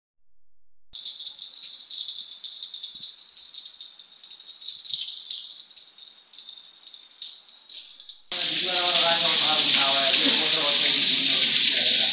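Rain falling steadily, heard as a thin hiss with faint pattering ticks. About eight seconds in it switches abruptly to a much louder, fuller hiss of a heavy downpour, with a man's voice over it.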